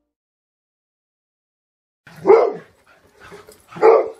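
A dog barking twice, once about two seconds in and again near the end, with softer sounds between the barks.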